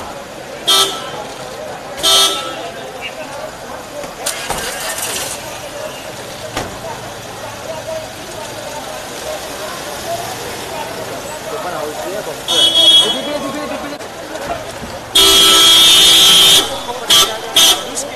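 Vehicle horn honking: a few short toots, then one long blast of about a second and a half near the end followed by two quick toots, over crowd voices and street noise.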